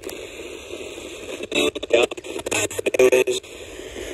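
Retro-style portable AM/FM/SW radio used as a spirit box, sweeping through stations: steady static hiss broken by short clicks and clipped snatches of broadcast voices, the loudest of them about one and a half to two seconds in and again around three seconds in.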